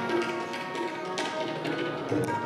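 Kirtan-style devotional music: tabla strokes over steady, held reed-like notes.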